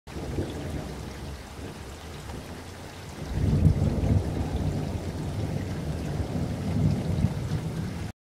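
Rain with rolling thunder: a steady rushing hiss over a deep rumble that swells louder about three seconds in.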